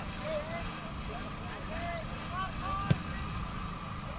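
Open-air football pitch ambience: faint, distant shouts from players and a steady low hum, with one sharp thud of a boot striking the ball for a free kick about three seconds in.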